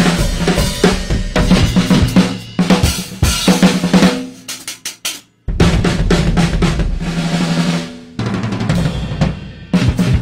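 Two acoustic drum kits, one a Sawtooth Command Series, played together in a fast hard-rock drum jam of bass drum, snare, rimshots and tom fills. The playing thins out to a few strokes about four seconds in and stops briefly, then comes back in full about a second later.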